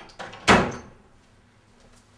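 A door shutting with one loud, sharp thud about half a second in, after a faint click.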